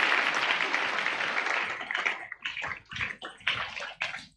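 Congregation applauding: a dense round of hand clapping that thins out over the last two seconds into scattered single claps.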